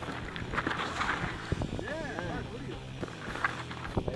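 A mountain bike rattling and knocking over a rocky trail descent, with many short knocks. A person calls out about halfway through.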